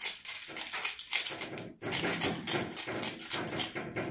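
Utility knife blade slicing and scraping along the edge of sandpaper glued to a nylon sanding drum, trimming off the excess: a rapid, irregular run of dry rasping scratches with a brief pause near the middle.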